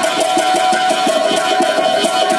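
Live Indian folk music played on stage: a held melody note over a quick, even beat on hand drums and percussion.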